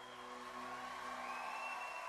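Concert audience applauding and cheering at the end of a song, while the last sustained notes of the music fade out.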